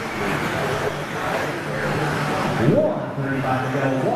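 Electric 2WD stock-class RC buggies running on an indoor track, their motors giving a steady whine. A little past two and a half seconds in, a sharp rising whine comes as one car accelerates.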